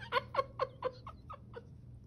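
A woman laughing: a run of short, falling "ha" sounds, about four a second, trailing off about a second and a half in.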